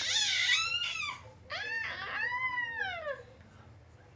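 A five-month-old baby's high-pitched vocal sounds: a short one at the start, then a longer one that rises and falls in pitch, ending a little after three seconds in.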